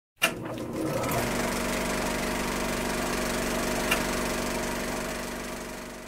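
A small engine running steadily with a low drone, a sharp click near the start and another about four seconds in, fading away near the end.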